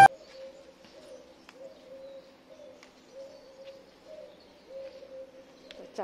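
Pigeons cooing: a low, soft coo repeated about twice a second, with a few faint clicks.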